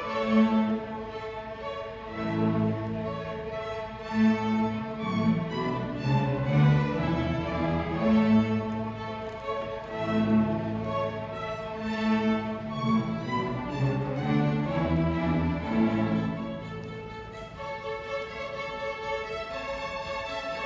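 A middle school string orchestra playing, with violins, violas, cellos and double basses holding sustained bowed notes over pulsing low-string notes. The music dips quieter near the end.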